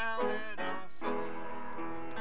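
Upright piano played with both hands: a quick run of struck chords, then a held chord ringing on from about a second in.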